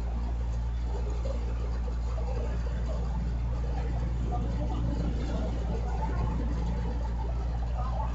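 A steady low hum with a faint haze of background noise, holding an even level throughout.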